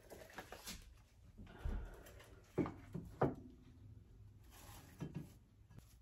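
Decor being set down and shifted on a wooden shelf: a ceramic berry basket and other small items knock and click softly. A low thump comes a little under two seconds in, then two sharper clicks about a second apart, with faint rustling between.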